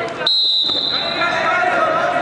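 Referee's whistle blown once in a single steady high blast of about a second, signalling the restart of Greco-Roman wrestling from the par terre position.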